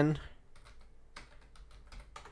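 Keystrokes on a computer keyboard: a short run of light, irregular clicks as a word is typed.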